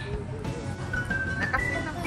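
Cheerful background music track whose high, clear melody moves in short held notes that step upward in pitch.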